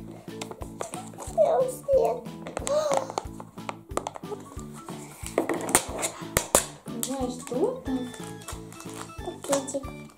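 Light background music with a steady repeating pattern, over which a little girl's voice comes in now and then. Around the middle there are a few sharp clicks and crinkles as a small cardboard surprise box and its foil pack are opened.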